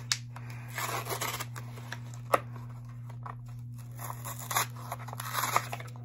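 Foil Yu-Gi-Oh booster pack wrapper being picked at and torn by hand: a series of short, uneven crinkling tears and small clicks as a tiny piece comes off.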